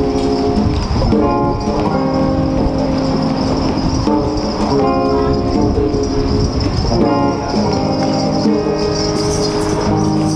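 Live band jam: electric guitar chords ringing over congas, djembe and a small drum kit, in a steady rhythm, with the chords changing about once a second.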